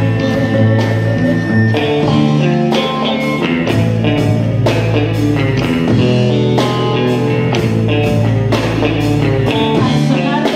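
Live rock-tinged Mexican band music: electric guitar over a drum kit keeping a steady beat, with sustained low notes underneath.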